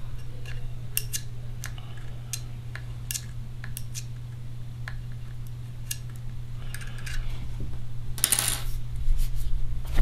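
Small, sharp metallic clicks and taps, scattered and irregular, from a 1.5 mm Allen key working the set screws on a Machine Vapor paintball gun's metal regulator. A steady low hum runs underneath, and a brief, louder rustle of handling comes near the end.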